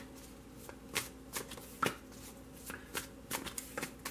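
A tarot deck being shuffled by hand, packets of cards slapping and sliding against each other in irregular soft clicks, a few a second.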